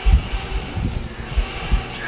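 Irregular low thuds of running feet on a hardwood floor, mixed with the rumble of a jostled handheld phone microphone. The strongest thud comes right at the start.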